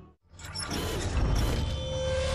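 Mechanical sound effects of a TV programme's closing sting: clicking and whirring like a camera lens mechanism turning. They start suddenly after a brief silence about a quarter second in.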